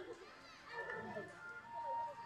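Distant voices of people talking in an open space, faint and overlapping.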